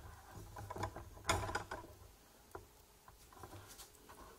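Light clicks and rustling, with a louder cluster a little over a second in, then a few scattered single ticks.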